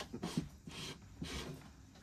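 A few soft breathy puffs about half a second apart: a woman's quiet breathing close to the microphone.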